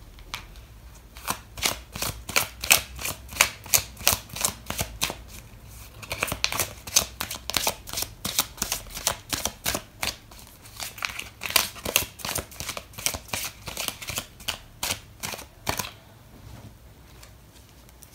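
A deck of oracle cards being shuffled by hand: a long run of quick, crisp card clicks and flicks, with a brief let-up about five or six seconds in, stopping about two seconds before the end.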